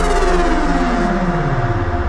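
Electronic dance music: a synth tone slides steadily down in pitch over a sustained bass, with the top end filtered away.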